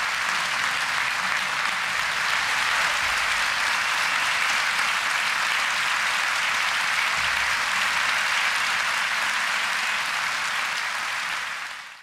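A theatre audience applauding steadily, fading out near the end.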